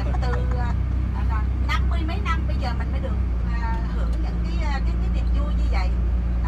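Steady low drone of a tour bus engine heard inside the passenger cabin, with voices talking over it at intervals.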